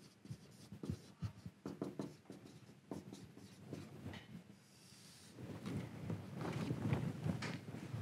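Marker pen writing on a whiteboard: a run of short, separate strokes with a brief higher squeak about halfway. Over the last few seconds louder handling and shuffling noise takes over.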